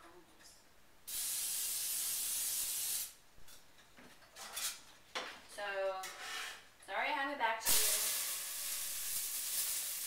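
Aerosol nonfat cooking spray hissing onto a hot pan for about two seconds, cut off abruptly. Near the end, a steady sizzle starts as chopped onions and green pepper go into the hot pan.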